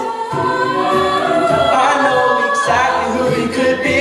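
Mixed-voice a cappella group singing layered harmonies live, with no instruments.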